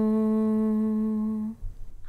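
A single voice holding one long, steady note at the end of a sung line of a Tamil devotional lullaby (thalattu), unaccompanied; the note stops about one and a half seconds in, leaving a brief pause before the next line.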